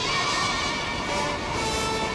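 Old film soundtrack: held musical notes over a steady roar of stormy sea, cutting in suddenly.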